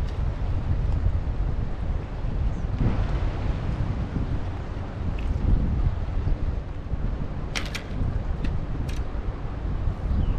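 Wind buffeting the microphone, a steady low rumble, with a few sharp slaps about three-quarters of the way through.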